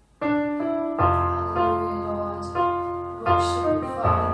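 Yamaha electronic keyboard playing sustained piano chords, with a deep bass note joining about a second in. The sound drops out briefly at the very start.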